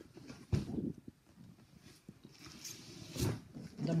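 Cardboard boxes being handled: a thump about half a second in and another a little after three seconds, with faint scraping and rustling of cardboard between them.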